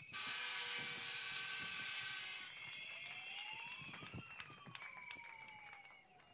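Faint outdoor street background: a vehicle-like hiss with a steady hum for the first two and a half seconds, then a tone that rises and falls back again, with scattered light clicks of paper pages being handled.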